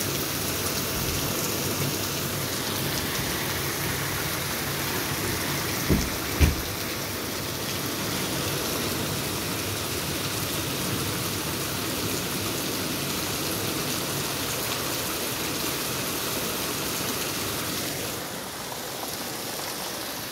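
Heavy rain pouring down on a street, a steady hiss of rain striking pavement and cars. Two dull thumps come close together about six seconds in, and the rain sounds a little quieter near the end.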